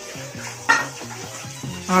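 Kitchen clatter of steel pots and utensils, with one sharp clink a little under a second in.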